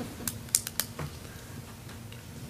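A handful of light, sharp clicks and taps, about five in the first second, over quiet room tone with a faint steady hum.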